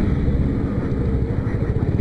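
Motorcycle engine running steadily as the bike rides along the road, a low, even rumble with road noise.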